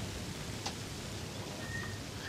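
Faint steady outdoor ambience of a golf course, a low even hiss, with a single faint click about a third of the way in and a faint thin high tone near the end.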